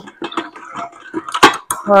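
Metal ladle clinking and knocking against a stainless-steel pot and food mill as cooked tomatoes are scooped in. There are scattered light clinks, with one sharper knock about one and a half seconds in.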